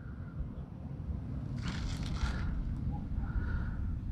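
A steady low background rumble, with a brief rustling scrape about two seconds in.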